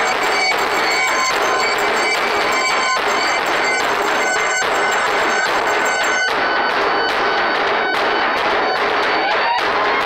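Live experimental noise-drone music: a loud, dense wall of distorted electronic noise with sustained high tones over it, cut into stuttering, choppy fragments. About six seconds in, the highest hiss drops away.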